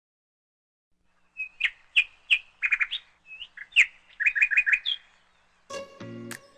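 A songbird singing: a quick run of sharp chirps and short repeated trill notes for about four seconds, starting after a second of silence. Music begins near the end.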